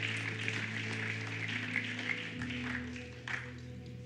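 Keyboard holding soft sustained chords, the bass note moving lower about halfway through, under scattered applause that dies away near the end.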